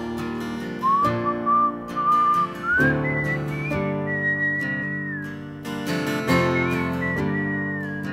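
Whistled melody over a strummed acoustic guitar. The whistle comes in about a second in, slides up to a higher line around three seconds in, and holds there with small bends while the strumming goes on.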